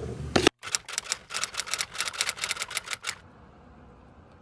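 Typewriter sound effect: a quick run of about twenty key clicks over two and a half seconds, matching a date caption being typed onto the screen. A short handling noise comes just before the clicks, and a faint steady background hiss follows them.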